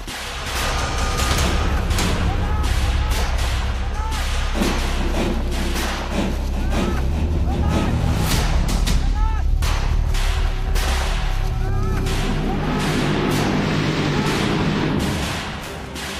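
Gunfire and explosions: many sharp shots and blasts over a deep, continuous rumble, with background music underneath.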